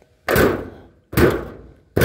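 Steel hood of a 1984 Chevy C10 pickup being pushed shut by hand rather than slammed: three heavy thumps under a second apart, each with a short metallic ring dying away over about half a second.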